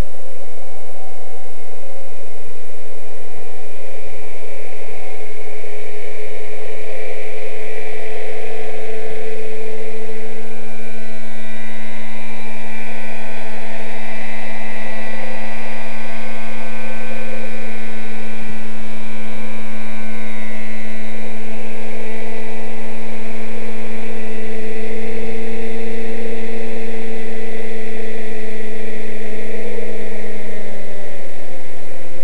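Radio-controlled scale MD 369 helicopter running, with a loud, steady whine from its drive and rotors as it comes in, hovers low and sets down; the pitch starts to fall at the very end as it winds down.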